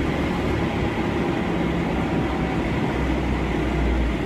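Case 580 backhoe loader's engine running steadily at travelling speed, heard from inside the cab, with the low rumble getting heavier about three seconds in.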